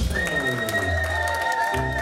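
Live band music in a large hall: a long held high note over bass and changing chords, with the audience clapping along.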